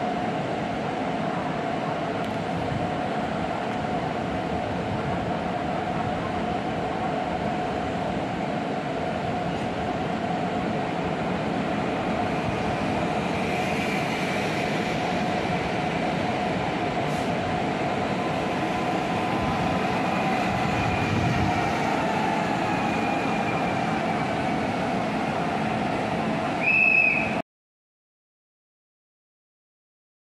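EN78 electric multiple unit running into the station and slowing, with steady rolling noise and a motor whine that falls in pitch as it brakes. A short high beep sounds near the end.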